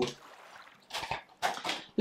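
Tarot cards being handled as a deck is picked up: two short papery rustles, about a second in and again shortly after.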